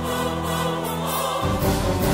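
Dramatic TV-serial background score: a sustained choir-like chord over orchestral strings, held steady, with the low notes shifting about one and a half seconds in.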